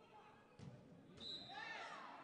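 Faint thud of a football kicked on an indoor artificial-turf pitch about half a second in, then players shouting during play.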